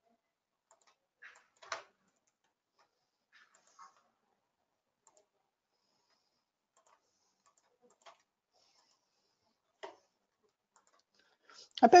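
A handful of faint, isolated computer mouse clicks, spread irregularly over a quiet background.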